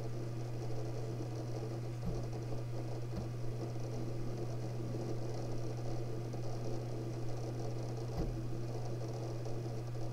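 A UGREEN DXP4800 Plus NAS running under load, its four 10TB enterprise-class hard drives active during a large data transfer. It gives a steady hum and fan noise, with a few faint drive clicks about two, three and eight seconds in.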